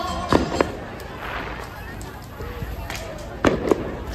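Four sharp pops in two quick pairs, one pair just after the start and one near the end, over the chatter of a street crowd; background music stops shortly after the start.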